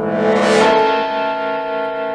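Dramatic TV soundtrack music: a held chord of many steady tones, with a bright swell about half a second in, then sustaining and slowly fading.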